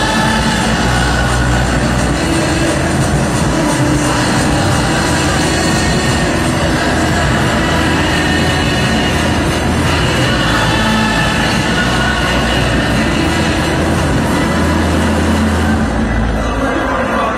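Loud, continuous music blended with a dense background din.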